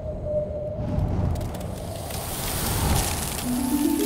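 Sound-design logo sting: a low rumbling swell and an airy rising whoosh that build in loudness, then a run of rising bell-like mallet notes begins near the end.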